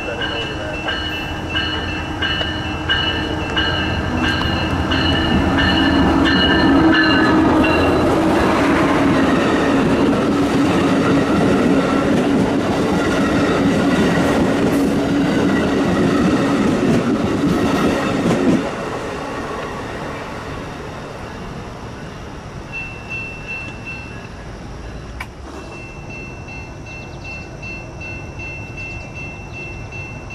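Passenger train passing close by, wheels rolling over the rails in a dense, loud rumble that builds over the first few seconds and ends abruptly about two-thirds of the way in. A grade-crossing warning bell rings in quick repeated strokes at the start and again near the end.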